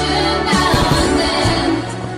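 Pop song playing, with sung vocals over a full backing arrangement.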